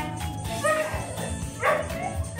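Background music, with a dog barking twice over it, about a second apart.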